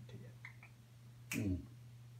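A quiet room with a faint steady hum, two light clicks, and one short sharp click or snap about a second and a half in.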